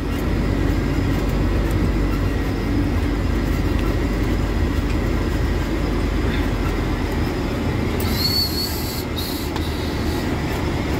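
Truck cab interior noise while driving: a steady low engine and road rumble, with a short hiss about eight seconds in.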